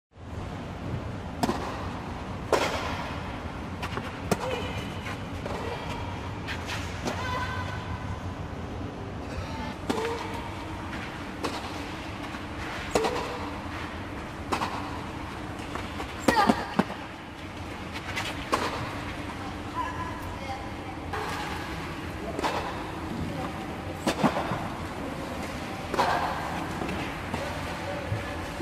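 Tennis balls struck by racquets during a doubles rally, sharp pops coming every one to three seconds inside a fabric air dome. Voices talking between shots.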